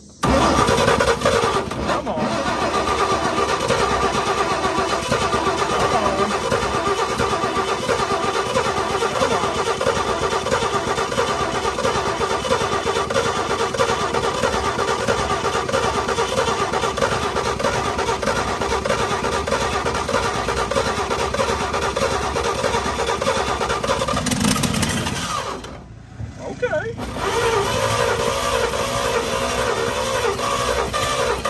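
1952 Chevy dump truck's straight-six engine cranking over on the starter without catching after sitting about 43 years: one long crank of some 25 seconds, a brief pause, then cranking again near the end.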